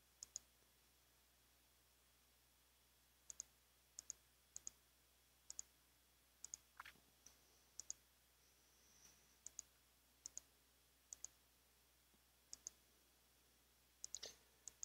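Faint computer mouse clicks, each a quick pair of sharp clicks, about eleven times at irregular intervals.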